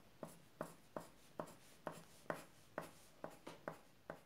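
Pencil drawing on paper: about ten short, quick strokes in a steady rhythm, two or three a second, faint.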